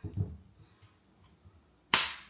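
A plastic bottle of Sprite has its cap twisted open near the end: a sudden, sharp hiss of carbonation escaping that fades quickly. Before it, a soft low thump of handling.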